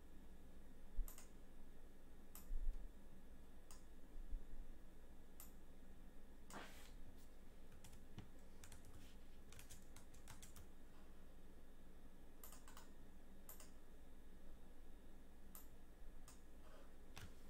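Faint, irregular clicking of a computer keyboard and mouse, with a few soft thumps in the first few seconds.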